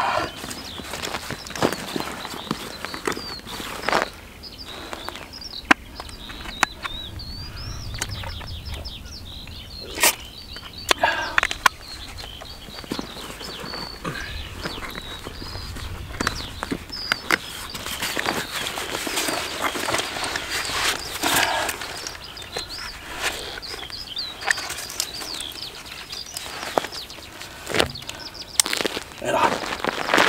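A backpack being handled and rummaged through on the ground: rustling with scattered sharp clicks, as of buckles and clasps. Small birds chirp in the background.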